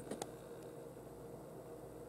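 Quiet room tone, with a faint click near the start as a plastic blister pack on a toy car card is handled.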